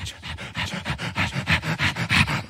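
A man breathing heavily and rhythmically into a close handheld microphone, quick panting breaths about five a second, growing louder as they go.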